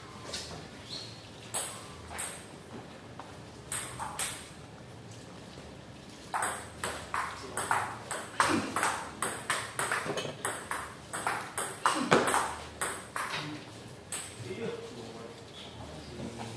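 Celluloid-style table tennis ball clicking off rubber paddles and the table in a rally: a few scattered bounces at first, then a fast run of hits about two to three a second through the middle, stopping a couple of seconds before the end.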